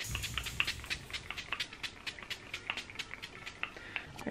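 Face setting spray being spritzed onto the face in a quick run of short pumps, about five or six a second.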